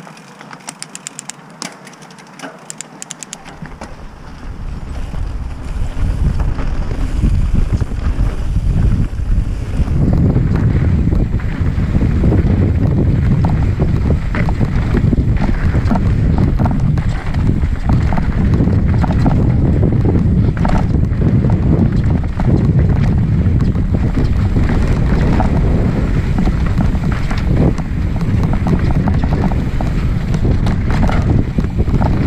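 Mountain bike descending a rocky dirt trail, heard from the rider's camera: wind buffeting the microphone and the tyres and bike rumbling and rattling over rocks and roots, building from about four seconds in and loud from about ten seconds on. Light rapid clicking in the first few seconds, before the rumble takes over.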